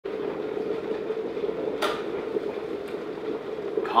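Electric kettle heating water, a steady rumbling hiss, with one sharp click about two seconds in.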